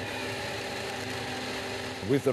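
Forestry harvester running steadily, its engine and hydraulics giving an even, unchanging hum.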